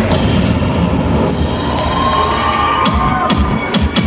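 Loud electronic dance-mix track for a stage choreography. In the middle a high screeching effect slowly falls in pitch, and sharp percussive hits come near the end.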